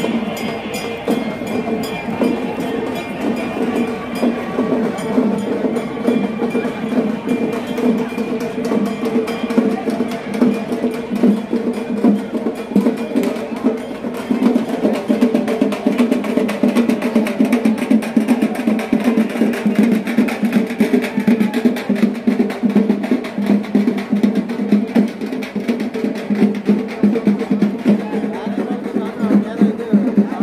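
Music with fast, dense drumming over a steady droning tone.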